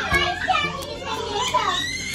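Several young children's voices calling out excitedly while they play together.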